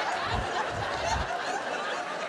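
Audience laughing and chuckling in a hall. A few low thuds come about half a second to a second in.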